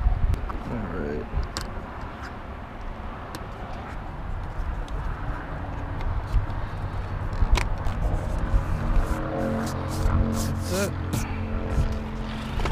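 Plastic interior door trim on a Subaru Legacy being pressed into place by hand: scattered sharp clicks and knocks as the clips and panel seat. From about eight seconds in, background music with a held chord comes in under the clicks.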